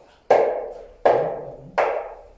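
Djembe hand drum struck in a slow, steady beat: three single strokes, each ringing out before the next.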